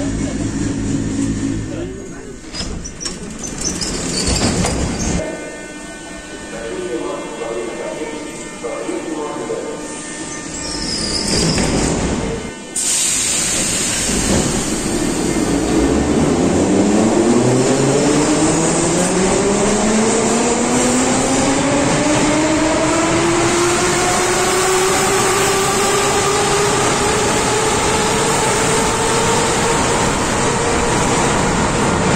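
Soviet-built 81-717.5M metro train accelerating away from the platform: its traction motors give a whine of several tones rising steadily in pitch, over loud running noise. The first dozen or so seconds hold quieter, mixed station platform noise that breaks off abruptly.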